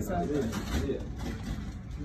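Indistinct low voices talking, with no clear words.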